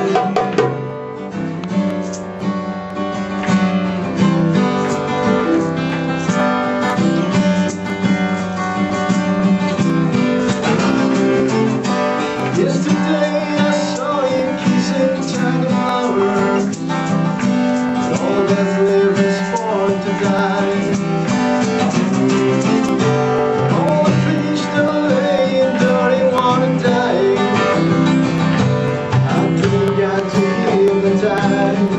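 Acoustic guitar strummed and picked, accompanied by a darbuka (goblet drum) struck by hand in a steady rhythm.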